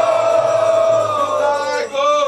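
Devotional kirtan chanting: a long held sung note that slides down in pitch near the end, over a steady low tone.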